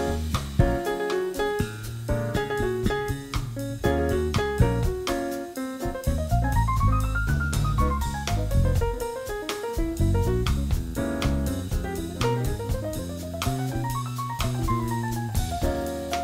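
Jazz piano solo on a grand piano, with fast runs that climb and fall back about halfway through and again near the end, backed by bass and a drum kit keeping time.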